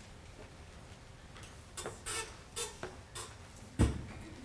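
Footsteps of a man walking up onto a stage riser: a few light steps, then one heavy thud on the stage near the end.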